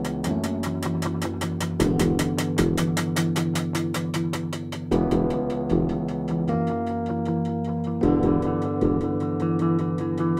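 Live instrumental music: held keyboard chords, each change struck anew every second or two, over a fast, steady ticking pulse of about six beats a second.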